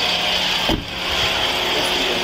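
Steady background of an idling vehicle engine, heard through a police body camera's microphone, with one low thump a little under a second in.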